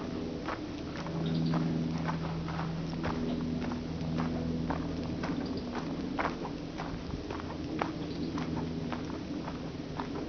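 Footsteps walking on a path of dry fallen leaves, crackling and crunching irregularly, several sharp crackles a second. A steady low hum comes and goes underneath.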